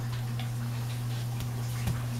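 A baby's hands and knees tapping on a hardwood floor while crawling: a few light, scattered knocks, the loudest near the end, over a steady low hum.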